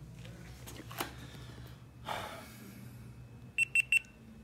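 GoPro Hero 8 Black action camera giving three quick high beeps as it powers on. A click about a second in and a brief rustle of handling come before the beeps.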